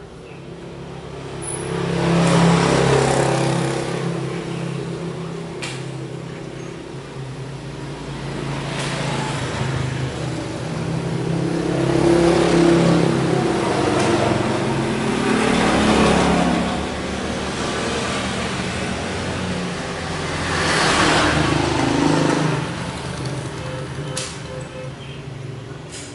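Road vehicles passing by one after another, four or five times, each swelling up and fading away over a few seconds, over a steady low engine hum.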